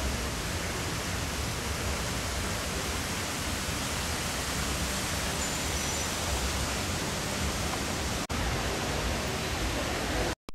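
Steady outdoor street ambience: an even wash of low rumble and hiss with no distinct events, broken by one very short dropout about eight seconds in.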